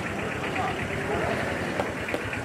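Indistinct voices with a steady low rumble underneath.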